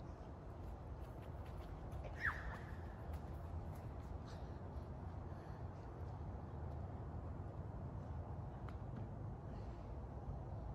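Wind rumbling on the microphone. About two seconds in there is one short high cry that falls in pitch.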